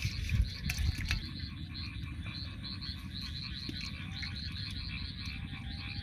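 A chorus of frogs calling in a steady rhythm, several pulsed calls a second, over a low steady rumble. In the first second or so, a few splashes and knocks as a hand stirs small fish in a pan of muddy water.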